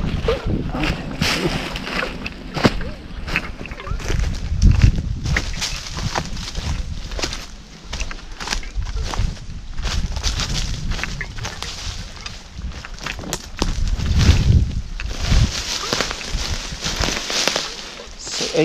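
Footsteps crunching and rustling through thick dry fallen leaves on a steep slope, with many irregular crackles. Low thumps of wind or handling on the camera microphone come about four seconds in and again near fourteen seconds.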